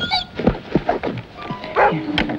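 A dog barking several times, with knocks in between, over background music.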